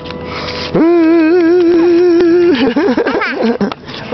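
A long, loud, held wail, steady in pitch with a slight waver, lasting nearly two seconds, then a run of shorter calls sliding up and down.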